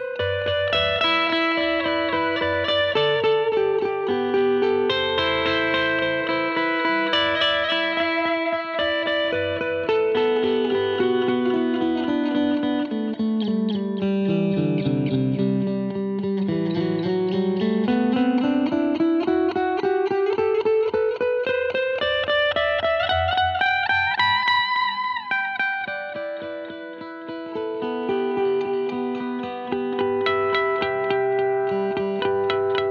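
Electric guitar played through an EarthQuaker Plumes pedal in its clean-boost mode (no clipping) into a clean Supro amp, with a loud, short delay and reverb from an Avalanche Run: single-note lines with the notes repeating off the delay. Midway a long pitch glide sweeps down and then back up, and the level dips briefly near the end.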